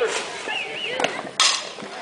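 Softball bat striking a pitched ball once, a sharp crack about one and a half seconds in: a solid hit driven into the outfield gap.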